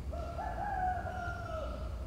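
A rooster crowing once, faint: a single long call that steps up in pitch near the start and then slowly falls away.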